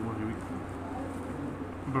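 Steady low buzzing hum throughout, with a faint voice in the first half-second and speech starting at the very end.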